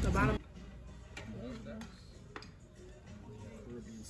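Quiet restaurant background of faint voices and music, with a few light clicks. It opens with the tail of a louder sound that cuts off suddenly.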